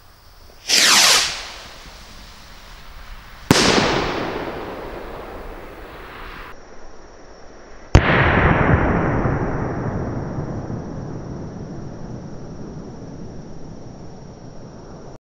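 Firework rocket: a quick sweeping whoosh about a second in, then a sharp bang a few seconds later. The loudest bang comes about halfway through, as the rocket bursts, followed by a long tail that slowly fades away.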